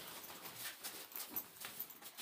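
Faint, irregular rustling and small scuffs, as of a person shifting about in a cramped rock cave.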